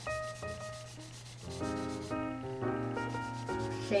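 Black felt-tip marker scribbling on paper in rapid back-and-forth strokes, shading in a box.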